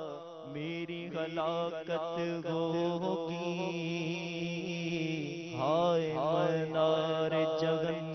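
A man's voice chanting an Urdu munajat (devotional supplication) without instruments, in long melismatic lines that waver and slide up and down in pitch, over a steady low hum held underneath.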